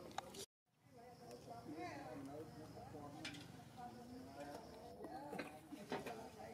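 Faint, indistinct voices of people talking in the background, with a few sharp clicks; the sound cuts out completely for a moment about half a second in.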